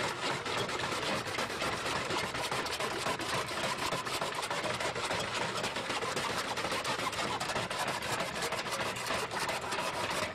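Several handsaws cutting through 4x4 wooden posts at racing speed: a continuous fast rasp of saw teeth on wood.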